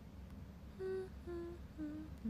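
A young woman humming three short notes with her mouth closed, each a little lower than the last, starting about a second in.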